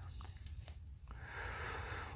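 Faint microphone background with a steady low hum, and a soft hiss rising in the second half.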